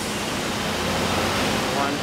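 Steady rushing noise with a low hum from the electroplating line's running equipment, unbroken until a spoken word near the end.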